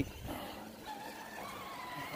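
Radio-controlled rock crawler's electric motor and gear drivetrain whining faintly as the truck crawls over rock.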